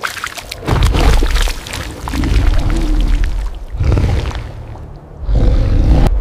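Sound-effect roars and growls of a giant tyrannosaur-like creature: four or five loud, deep swells over dramatic background music, one in the middle with a low wavering growl.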